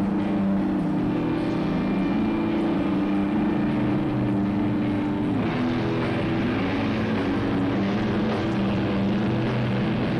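Live grunge band playing a heavy, distorted section: sustained low guitar and bass notes that drop to a lower chord about halfway through.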